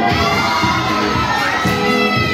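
An audience cheering, with many overlapping high-pitched held shouts, over the dance music.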